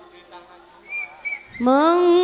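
A pause in a woman's campursari singing, with faint voice sounds and a few brief high whistle-like notes about a second in; then, about one and a half seconds in, her voice slides upward into a loud, long held note with a slight vibrato.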